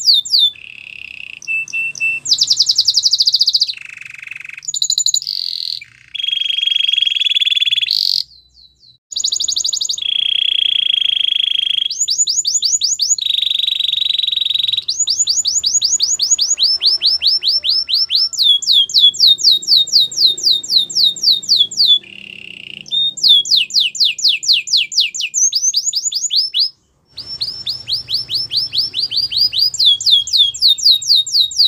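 Domestic canary singing a long song of fast trills: quick runs of repeated falling notes alternating with held, rolling buzzy phrases, broken by two short pauses, one about eight seconds in and one near the end.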